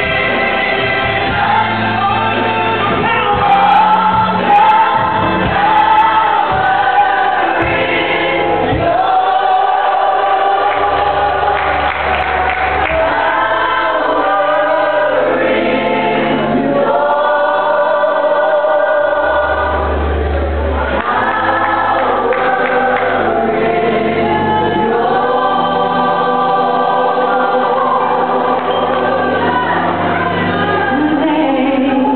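A large gospel choir singing in full harmony, holding long chords, with low bass notes from the band underneath.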